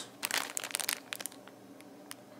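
Crinkling and crackling of a paper parts invoice and a plastic parts bag being handled. A quick flurry of crackles fills the first second or so, then it turns faint.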